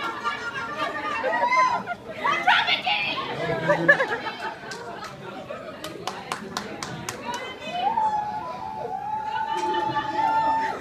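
A group of people chattering and calling out as they watch a relay race, with a run of sharp clicks in the middle and one long, drawn-out shout near the end.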